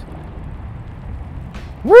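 A loud shouted 'woo!' near the end, its pitch rising and then falling, over a faint low rumble.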